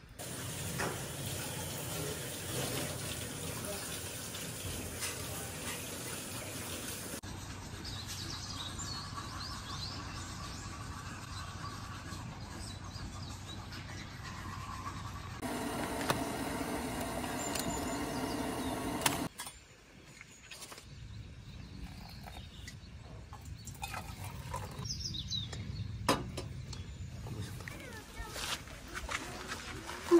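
Outdoor ambience with birds chirping now and then over a steady background hiss. The sound changes abruptly a few times.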